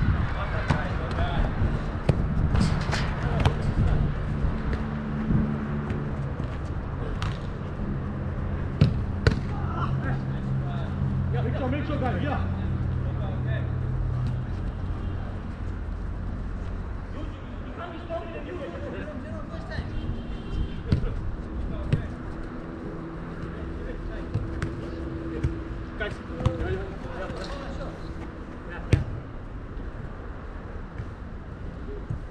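A soccer ball being kicked again and again during a small-sided game, sharp strikes scattered through, with players' distant shouts and calls. A steady low hum underlies the first half and fades after about 15 seconds.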